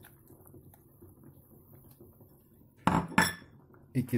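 Kitchenware clinking twice in quick succession about three seconds in, after a quiet stretch.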